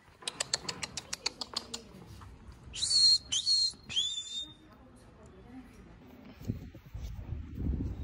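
A quick run of footsteps on tile, then three short, sharp whistles made to call a puppy to follow.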